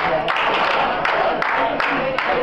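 Restaurant staff clapping a steady beat, about three claps a second, with voices chanting along: a birthday song being brought to a table.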